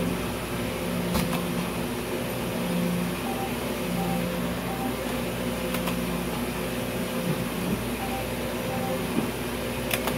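Electronic tones and a repeating beeping jingle from a video slot machine as its reels spin, over a steady hum. Three sharp clicks of the spin button, about a second in, near the middle and at the end.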